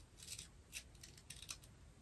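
Faint, scattered light clicks of keys being tapped on a computer keyboard, about a dozen irregular taps over two seconds.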